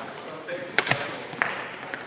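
Badminton racket strikes on a shuttlecock in a rally: sharp hits a little under a second in, another just after, and a third about half a second later, ringing in a large hall.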